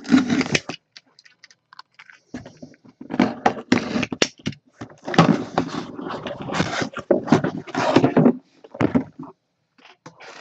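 A cardboard box being opened by hand and a clear plastic display cube being lifted out and set down: irregular rustling and clicking, sparse at first and dense from about three seconds in.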